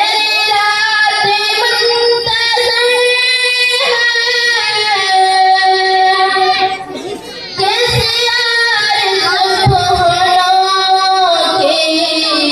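A young girl singing an Urdu ghazal solo into a handheld microphone, with no instruments, in long, held, ornamented notes. There is a brief break for breath a little past halfway.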